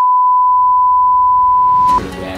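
A loud, steady electronic test-tone beep: one unwavering high pitch held for about two seconds, then cut off sharply, the classic 'technical difficulties' tone played with a test card.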